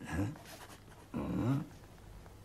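A man's voice saying a short, questioning "Hein?" twice, rising in pitch each time.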